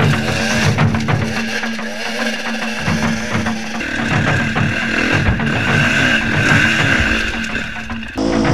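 Dirt bike engines revving up and dropping back over rough trail, with a music track playing over them.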